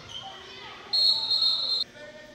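Referee's whistle blown once, a loud, shrill blast of about a second that stops play. Voices can be heard around it in the gym.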